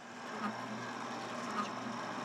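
Kitchen HQ soft-serve ice cream maker's electric motor running steadily with a low hum, churning the ice cream while its dispensing lever is open.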